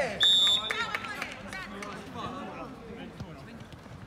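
A referee's whistle gives one short blast just after the start, signalling a goal, followed by players shouting.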